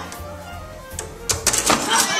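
Background music, with a quick run of sharp clicks and knocks about a second and a half in.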